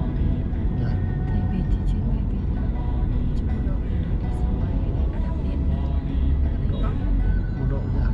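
Steady low rumble of a Mercedes-Benz car driving, heard from inside the cabin, with a voice and music playing over it.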